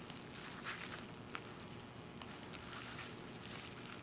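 Faint crinkling and rustling of plastic wrapping being unwrapped in gloved hands, with a few small sharp ticks.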